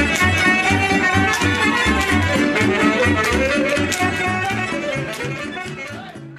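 Live Romanian folk band music led by a violin, over a steady, evenly repeating bass beat. It grows quieter over the last second or so as the tune winds down.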